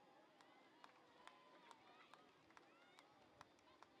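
Faint open-field ambience of a soccer match: distant players' voices calling out, with scattered sharp short clicks.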